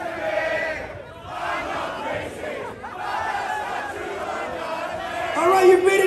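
Concert crowd shouting and chanting between songs, dipping briefly twice; near the end a loud voice comes in over it.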